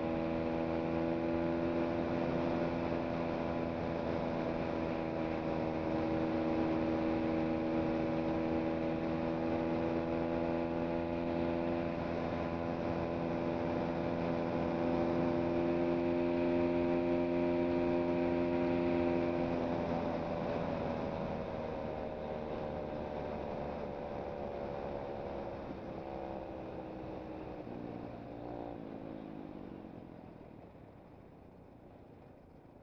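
2017 SSR SR125 pit bike's single-cylinder four-stroke 125cc engine running at high, steady revs under throttle, with a constant pitch. About two-thirds of the way in the throttle comes off and the note falls away gradually, getting quieter, as the bike slows.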